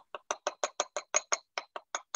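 Rapid, even clicking, about five or six small sharp clicks a second, like a ratchet.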